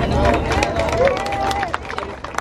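Voices over an outdoor crowd, with a steady low rumble and scattered short sharp clicks. One voice holds a long note near the end.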